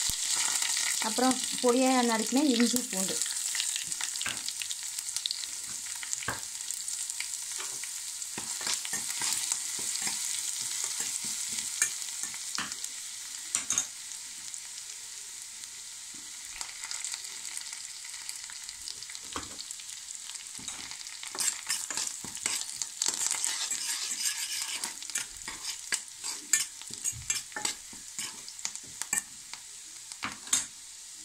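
Tempering of ghee, mustard seeds, cumin, dried red chillies, curry leaves and chopped garlic sizzling in a small steel pan: a steady frying hiss with scattered crackles and pops. The hiss eases a little midway, and sharper pops come more often in the last several seconds.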